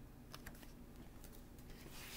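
Faint scattered clicks and light rustling from the paper pages of a picture book being handled as a page is turned.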